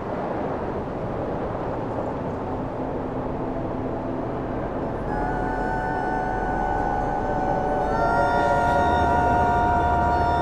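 Ominous soundtrack music: a wind-like rushing noise, joined about halfway through by sustained held chords that grow fuller and louder near the end, over a low drone.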